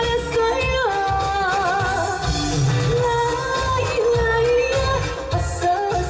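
A woman sings a Korean trot song live through a microphone over amplified instrumental accompaniment with a regular bass beat. About a second in she holds a note with wide vibrato.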